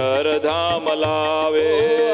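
Devotional kirtan being sung, voices holding a drawn-out melody over a drum beat that lands about twice a second.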